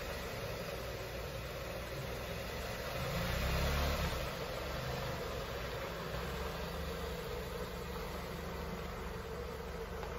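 Dodge SUV's engine running at low speed as the vehicle pulls away, with a brief louder swell about three to four seconds in, then running steadily as it rolls off.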